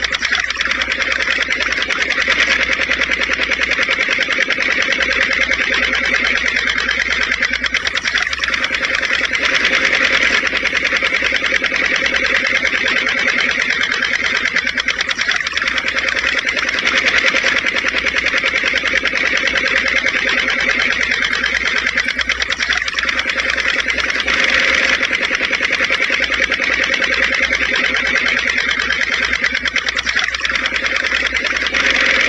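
Small electric motor of a miniature model chaff cutter running steadily with a high whine, driving its flywheel cutter as grass is fed in.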